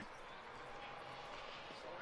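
Faint, steady background hiss of outdoor ground ambience.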